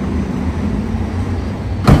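Steady low rumble of an idling truck engine, with one sharp knock just before the end.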